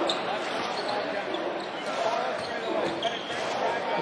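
Arena crowd noise during live basketball play, with a ball being dribbled on the hardwood court.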